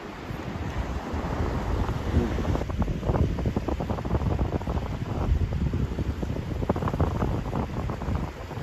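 Wind buffeting the microphone: a gusty low rumble that grows rougher and more irregular about three seconds in.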